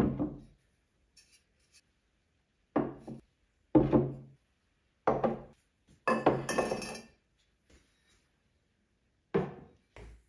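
Ceramic vases set down one after another on a wooden desk top, making a series of short knocks and clinks, about six in all. Near the middle there is a brighter clink of ceramic against ceramic.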